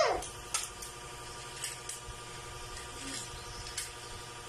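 Plastic toys clicking and knocking on a tiled floor as children handle them: a few light, separate clicks spread through. A child's high-pitched vocal call ends right at the start.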